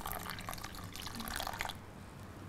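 About an ounce of water poured from a small ramekin into a stainless steel mixing bowl of grated pumpkin, a short trickling splash that tails off near the end.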